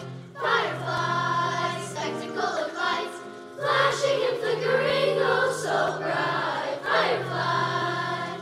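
Children's choir singing in parts, with the loudness swelling and easing from phrase to phrase.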